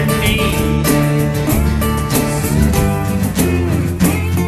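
A country-tinged rock band recording, led by guitar over bass and a steady drum beat.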